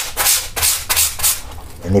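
A stiff brush scrubbing back and forth in quick strokes over wet, soapy trouser fabric, stopping about a second and a half in. It is brushing dried wall-paint stains out of the cloth.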